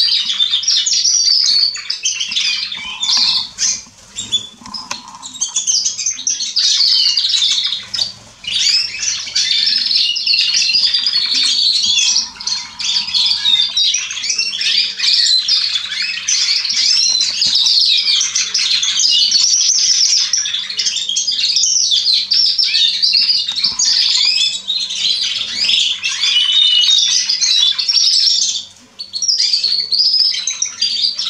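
Canaries singing a continuous, fast, rolling song of trills and warbles, with brief pauses about four and eight seconds in and again near the end.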